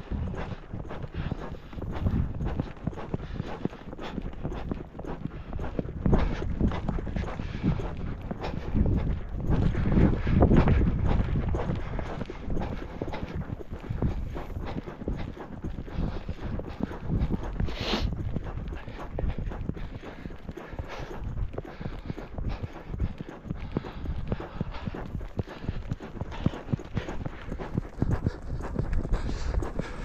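Hoofbeats of a ridden three-year-old gelding on a dirt track: a continuous run of clip-clop footfalls.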